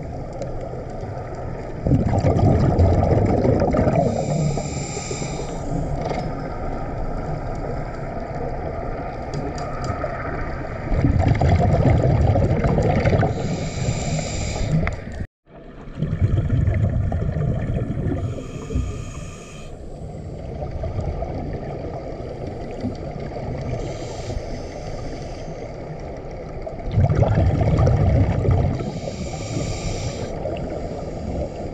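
A scuba diver's breathing heard through an underwater camera housing: four bubbling exhalations from the regulator, each lasting a couple of seconds, over a steady underwater hiss. The sound drops out for an instant about halfway through.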